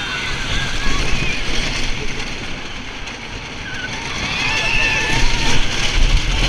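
Wooden roller coaster ride: a steady rush of wind and the rumble of the train on the wooden track, with riders screaming. A long high scream comes about four to five seconds in.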